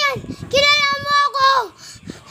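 A child's voice holding high, steady notes: a short one at the start, then a longer one lasting about a second that dips slightly and falls away at the end.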